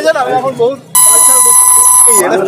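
A man talking, then about a second in a loud, steady electronic beep cuts in abruptly over his voice and holds at one pitch for over a second: a censor bleep edited over his speech.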